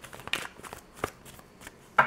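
Tarot cards being handled as the next card is drawn: soft rustling with a few light clicks, the sharpest about a second in.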